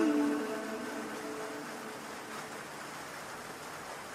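The last held note of a Quran recitation dying away in reverberation over the first second or so, then a steady faint hiss in the pause between verses.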